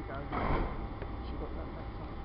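Southern Class 377 electric multiple unit standing at the platform, giving a steady low hum. About half a second in there is a short, louder rush of noise, with voices in the background.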